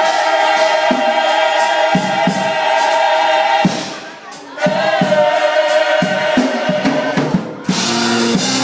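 Gospel choir singing two long held chords, broken by a short pause about halfway, with a few drum hits under them.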